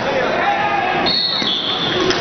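Spectators yelling in a gymnasium, with a high, held note from about halfway through that drops slightly in pitch.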